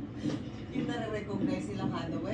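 People's voices over a steady low rumble.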